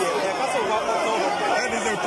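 A crowd of Members of Parliament talking and calling out over one another at once, no single voice standing out, during a scuffle around the Speaker's chair.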